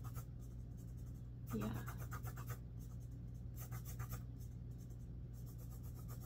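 Pen scratching on paper in quick, irregular strokes, over a low steady electrical hum.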